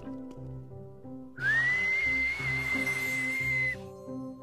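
A single long whistled note that slides up quickly about a second and a half in, then holds steady and breathy for over two seconds before cutting off, over soft background music.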